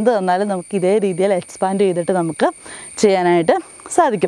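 A woman's voice speaking almost throughout, over a steady high-pitched drone of crickets.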